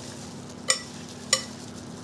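Metal spoon knocking twice against a glass bowl while stirring sardines in a salt-and-chili paste: two short ringing clinks about half a second apart.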